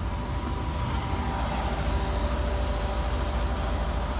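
City street traffic: a steady rumble of vehicles with a few faint steady tones above it.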